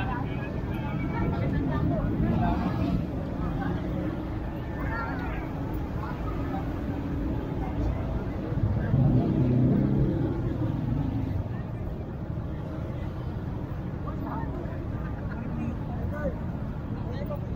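Outdoor crowd chatter over a steady low rumble of vehicle engines, with an engine growing louder around the middle and then fading.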